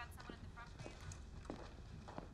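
Faint footsteps on a hard floor: a handful of light, irregular steps.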